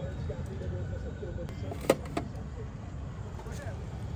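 Steady low rumble of background noise with faint voices in the first couple of seconds, and a sharp click about two seconds in, followed by a smaller one.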